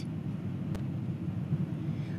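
Steady low background rumble, room noise between spoken lines, with one faint click about three quarters of a second in.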